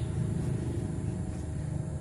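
Steady low rumble of heavy diesel machinery running at a distance: a dredger at work on a reservoir, with its pump running.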